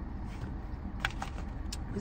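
Steady low hum of a car's cabin, as from an idling engine, with a few faint clicks about a second in and again near the end.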